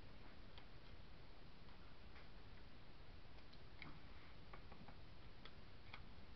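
Faint, irregular small clicks and taps from hands handling craft materials at a table, over a steady low hiss.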